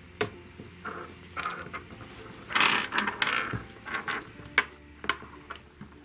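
Small plastic teddy-bear counters being set down and shuffled on a wooden surface: scattered light clacks and taps, with a short burst of plastic pieces scraping and knocking together about halfway through.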